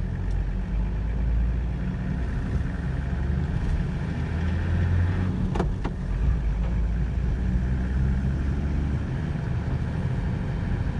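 Steady low rumble of a vehicle's engine and tyres, heard from inside the moving vehicle as it drives slowly along, with two brief clicks about five and a half seconds in.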